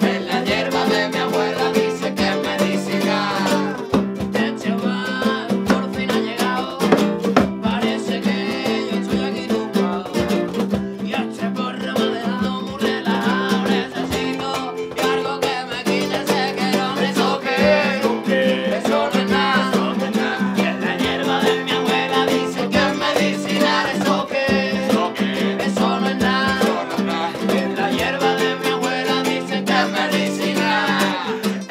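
Live acoustic band playing: strummed acoustic guitar and ukulele over a steady hand-drum beat from a djembe, with voices singing along.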